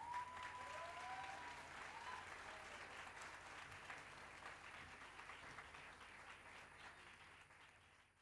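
Audience applauding, with a long steady high note held over the first couple of seconds; the clapping thins and fades out near the end.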